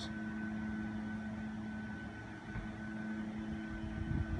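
A steady mechanical hum with a faint, constant higher tone over low background noise.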